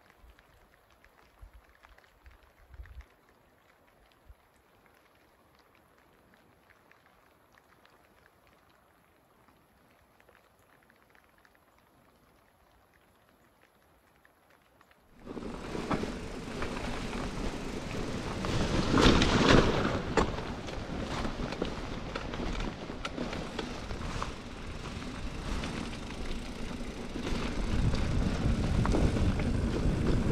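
Near silence for about the first half, then a sudden start of a bikepacking mountain bike riding dirt singletrack: steady wind rush on the microphone with tyre noise and small rattles of the bike. It grows louder about two-thirds of the way through and again near the end.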